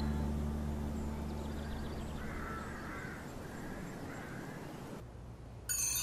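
Outdoor ambience with a steady hiss and a few short, harsh bird calls in the middle, as background music fades out; near the end it drops quieter and new music with bright, chiming notes comes in.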